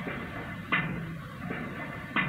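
A pile driver's hammer striking a pile: a sudden thud about two-thirds of a second in with a short ringing tail, and a fainter knock around a second and a half.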